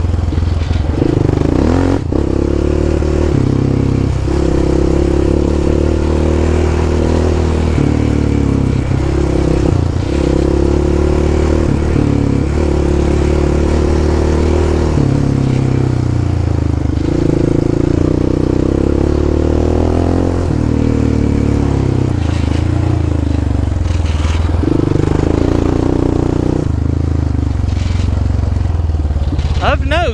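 Yamaha Raptor 700 ATV's single-cylinder four-stroke engine running at trail speed, its pitch rising and falling as the throttle opens and closes.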